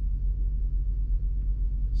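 Steady low rumble of the Lexus GX470's 4.7-litre V8 idling, heard from inside the cabin.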